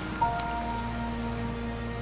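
Rain falling into a puddle, with a soft sustained music chord coming in a moment in and holding.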